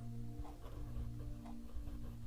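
Faint scratching and light ticks of a Pilot Tank fountain pen's medium nib writing on paper, over a steady low hum.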